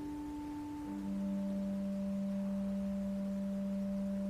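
Pipe organ holding sustained notes. A higher held note gives way about a second in to a lower note, which is held steadily to near the end.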